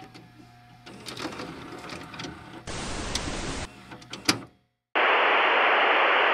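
A VHS cassette being pushed into a VCR: the loading mechanism hums and clicks, with a denser mechanical rush about three seconds in and a sharp click just after. About five seconds in, a loud, steady burst of TV static hiss begins.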